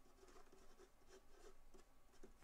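Faint scratching of a pen writing a word on paper, in a run of short, uneven strokes.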